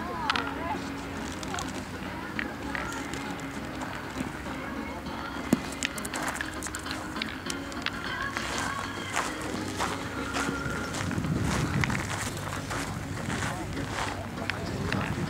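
Steel pétanque boules clacking against one another and on gravel, a string of short sharp clicks that grows busier in the second half, over low voices talking.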